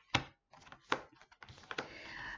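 Oracle cards being handled and set down on a table: three sharp taps a little under a second apart, with fainter clicks and a soft rustle of cards near the end.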